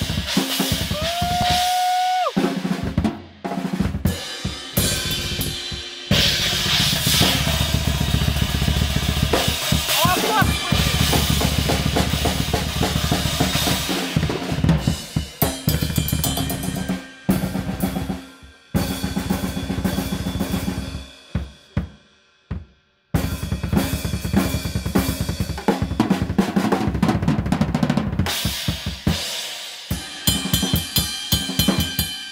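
Acoustic drum kit played solo and hard: rapid bass drum, snare and cymbal grooves and fills, stopping briefly about three quarters of the way through before the drumming starts again.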